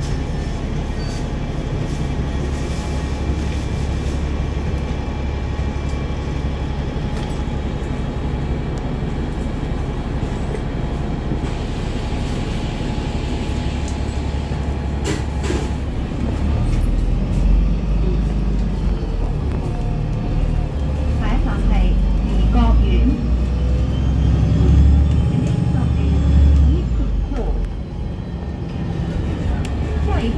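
Interior of a double-decker bus: a steady low hum while it stands, a brief hiss of air about twelve seconds in, then a louder low rumble as the bus pulls away about halfway through, with a faint whine rising in pitch as it gathers speed.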